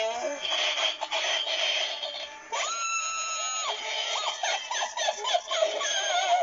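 Magic Power 'Heads Up Hilda' animated witch prop playing its recorded soundtrack through its built-in speaker: spooky music under a witch's voice, with one long high note held for about a second near the middle, then wavering laugh-like voice sounds.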